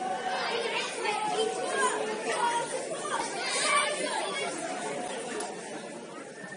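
Overlapping chatter of several people talking at once among football spectators, with no single voice standing out.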